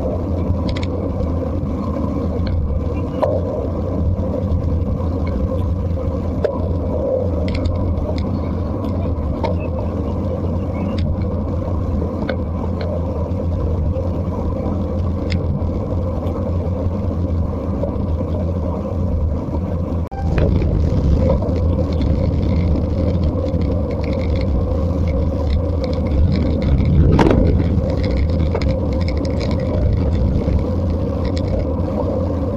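Wind roar on a bike-mounted camera's microphone, mixed with tyre and road rumble, from a racing bike riding in a fast bunch at about 44–54 km/h. It is a steady low roar with scattered clicks, and it grows louder about two-thirds of the way through as the speed rises. A brief rising squeal comes near the end.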